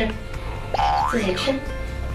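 Background music with an added cartoon sound effect: a whistle-like glide that rises steeply about three-quarters of a second in and then drops back, with brief voices around it.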